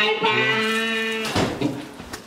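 A held musical note, a steady tone with several pitches sounding together for just over a second, then breaking off into a brief noisy crash.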